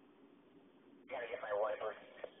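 A short burst of unclear voice over a two-way radio or scanner. It cuts in abruptly with a click about a second in and lasts just under a second.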